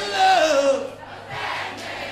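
Male lead vocalist singing unaccompanied through a PA, a long drawn-out vocal cry that slides down in pitch in the first second, then dies down before picking up again faintly.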